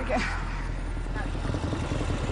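Small engine of a three-wheeled auto-rickshaw (mototaxi) running close by, a rapid low putter that gets rougher near the end.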